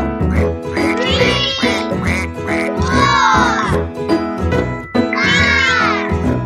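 Bouncy children's-song music with a cartoon duck quack sound effect three times, roughly every two seconds.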